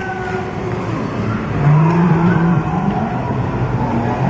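Electronic sound effects from arcade game machines in a busy gaming zone: engine-like tones rising and falling over a dense background of game noise.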